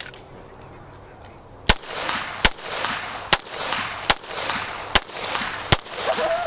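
Handgun shots fired in a steady string: six shots, about one every 0.8 seconds, starting nearly two seconds in, each trailed by a short echo.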